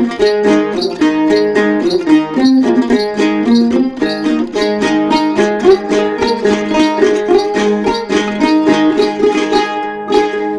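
Đàn tính, the long-necked Tày gourd lute, played in an instrumental passage of a Then folk melody: a steady run of quick, evenly paced plucked notes.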